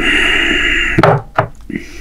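A man's drawn-out voiced sound straight after a drink, held steady for about a second, then two sharp knocks as the glass is set down on the wooden table.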